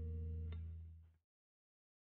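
Suhr electric guitar letting a three-note G-flat major seventh chord voicing ring, with a faint pluck about half a second in. The chord fades and cuts off to silence a little over a second in.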